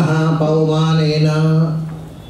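A man's voice chanting, holding one syllable on a single steady pitch for well over a second, then trailing off near the end.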